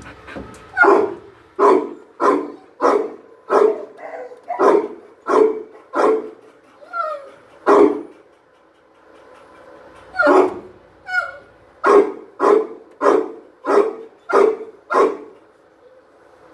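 A dog barking repeatedly at close range, about two barks a second, in two runs separated by a pause of about two seconds in the middle.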